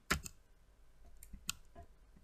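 Computer mouse clicking twice, a short click just after the start and a sharper one about a second and a half in.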